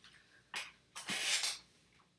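A woman's breath: a short sharp intake about half a second in, then a breathy exhale, like a sigh, lasting about half a second.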